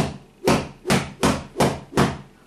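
A long, thin rattan cane flicked rapidly from the wrist, swishing through the air about three times a second in a quick run of sharp whooshes.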